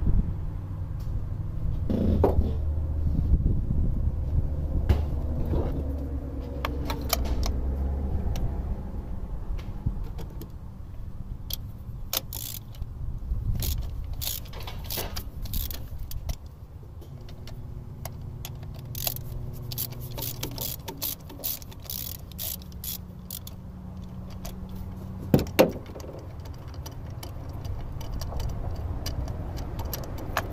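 Hand tools working at an engine's ignition coil as a spark plug is taken out: a screwdriver and a ratchet clicking and tapping in irregular runs, with two sharper clicks near the end. A low steady rumble runs underneath.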